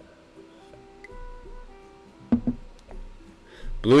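Background music with plucked guitar notes, one held note after another, and a single sharp knock a little past halfway.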